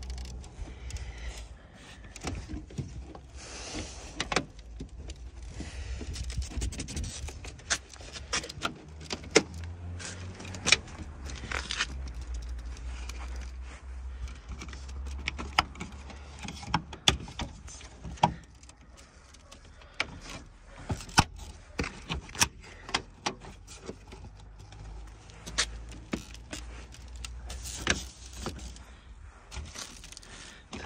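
Irregular plastic clicks, taps and knocks as a plastic grille is pushed and worked into a Volkswagen Passat's bumper, its clips being pressed to snap into place, over a low steady rumble.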